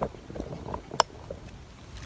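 Handling noise from a phone camera being set down and adjusted on the ground: faint rubbing and rustling, with one sharp click about a second in.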